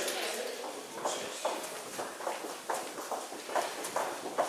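Footsteps of several people walking briskly on a hard corridor floor: sharp heel clicks, about two to three a second.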